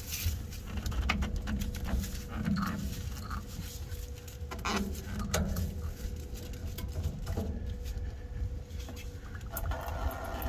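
Scattered clicks and knocks of hands loosening the FASS fuel filter, with a light patter of diesel running out as the fuel system's pressure bleeds off.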